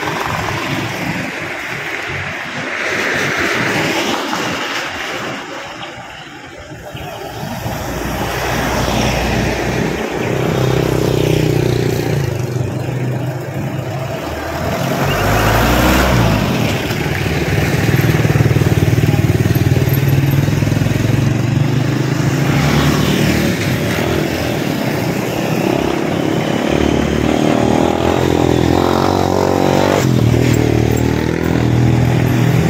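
Motor vehicles passing by on the road, one after another, each swelling and fading. A steady low engine hum runs under them in the second half.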